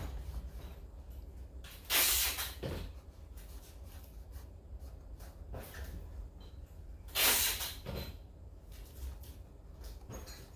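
Paintbrush bristles dragging over stretched canvas in short strokes. Two louder scratchy swishes come about two seconds in and about seven seconds in, with fainter brushing between, over a low steady hum.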